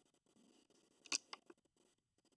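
Quiet small-room tone broken by a quick cluster of three small sharp clicks about a second in, the first the loudest.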